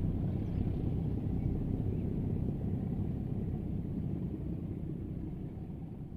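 Low rumble of a departing double-headed pair of class 751 'Bardotka' diesel locomotives, growing quieter as they draw away.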